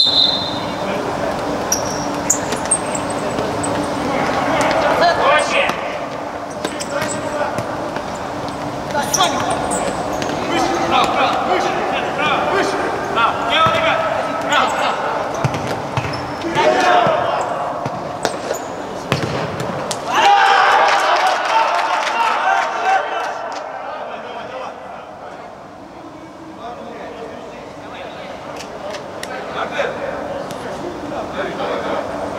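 Futsal being played in a reverberant sports hall: players shouting and calling to each other, with the knocks of the ball being kicked and bouncing on the court. A louder burst of shouting comes about twenty seconds in, after a goal.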